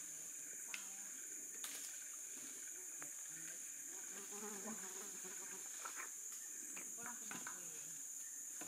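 Steady high-pitched chorus of forest insects, with scattered light snaps and rustles of twigs and leaf litter as a young orangutan digs through them.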